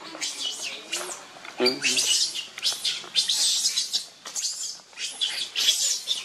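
Repeated short, high-pitched animal calls, with a brief lower call about one and a half seconds in.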